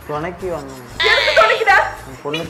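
A woman scolding loudly in Tamil, with a high, wavering, bleat-like cry about a second in, over background music.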